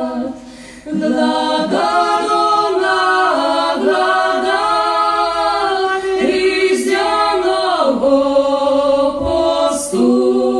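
A small group of voices, a man and two women, singing a Lemko folk song a cappella with no instruments. The voices stop for a short breath and come back in together about a second in, then hold long notes.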